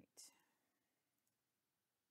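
Near silence: room tone, with a short breathy hiss right at the start.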